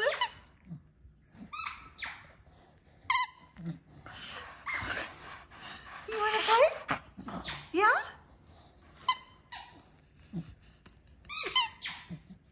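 A Staffordshire bull terrier "talking": short high squeaks alternating with longer whines and moans that rise and fall in pitch, the vocal begging of a dog that wants to play with its ball.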